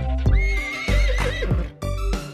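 A horse neigh sound effect: one wavering whinny of about a second that drops in pitch at the end. It plays over a children's song backing track with a steady beat.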